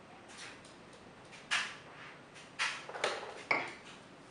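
Four short, sharp breaths through the nose from people holding a mouthful of sriracha hot sauce with their lips closed, the first about a second and a half in and three close together near the end; they come from the burn of the chilli sauce.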